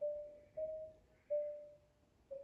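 Concert marimba played solo with mallets: a slow line of single notes close together in pitch, about four struck in turn, each left to ring and fade, with a short pause near the end.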